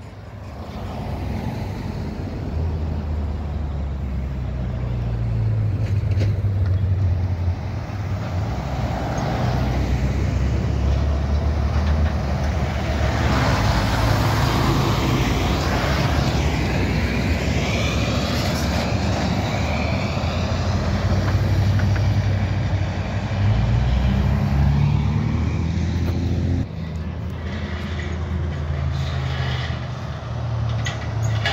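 A diesel semi truck pulling a lowboy trailer for an oversized load drives past close by, its engine working and its tyres loud on the road. It is loudest about halfway through. Near the end the sound cuts to a quieter engine rumble as another semi truck approaches from a distance.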